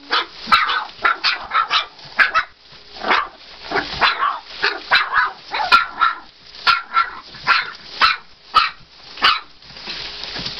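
Three-week-old American bulldog puppies yelping and squealing in short, high cries, about two a second.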